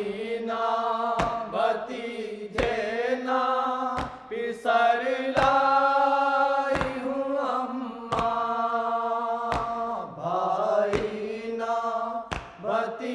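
Voices chanting a Muharram noha in chorus, with long held notes over a steady low tone. A sharp beat falls about every second and a half.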